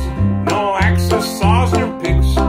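Old-time string band playing a bouncy tune: acoustic guitar strumming, upright bass notes on each beat, banjo picking and the clicking of musical spoons.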